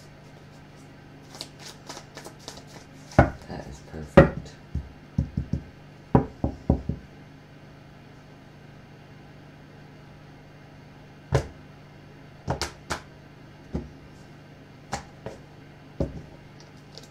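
Tarot cards being handled: irregular sharp taps and knocks as the deck and cards are tapped and set down, in a busy cluster early on with the loudest knock about four seconds in, a quiet stretch, then a few single taps near the end.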